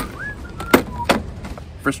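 Packaging being pulled off a new garden hose, with two sharp snaps about three quarters of a second and a second in, over a few soft whistled notes.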